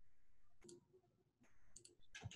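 Faint computer mouse clicks over near silence: one about a third of the way in, then two in quick succession near the end.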